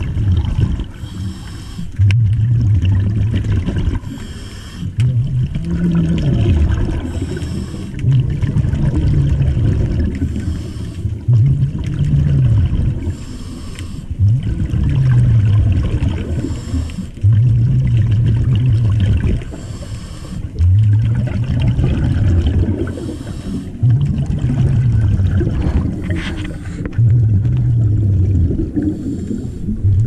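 Diver breathing underwater through a scuba regulator: a short inhale hiss, then a longer burst of exhaled bubbles, repeating about every three seconds, ten breaths in all.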